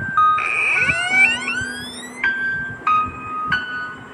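Eerie background music: a cluster of gliding tones rising through the first two seconds, then a chime-like two-note figure, a higher and a lower note alternating about every half second.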